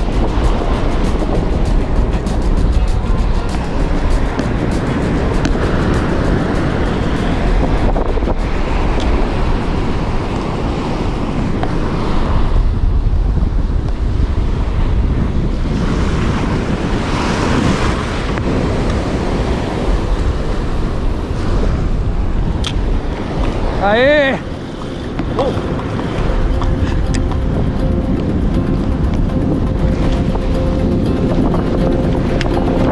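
Surf washing onto the beach with wind buffeting the microphone throughout. About three-quarters of the way through there is one brief wavering call.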